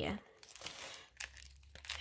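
Clear plastic sleeve pages of a sticker storage album rustling and crinkling softly as they are flipped by hand.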